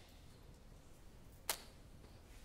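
Near silence: room tone, broken by a single sharp click about one and a half seconds in.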